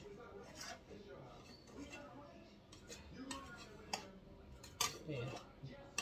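A utensil scraping and tapping against the inside of a metal bundt pan, in scattered light clicks, as it works around the edge of a baked cake to loosen it from the pan.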